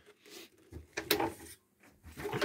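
Faint handling noises from an old upright vacuum cleaner being handled: a light click near the start and a sharper click or knock about a second in.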